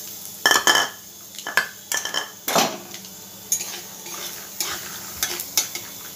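Metal ladle clinking and scraping against an aluminium kadai as peanuts are stirred and fried in hot oil, a dozen or so irregular clinks over a light sizzle.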